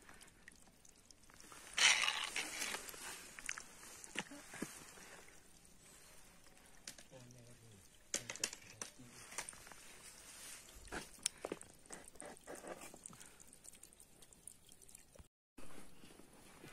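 A hiker's footsteps on a rocky mountain trail: irregular scuffs, crunches and knocks of boots on stone, with rustling. A louder scraping rush comes about two seconds in.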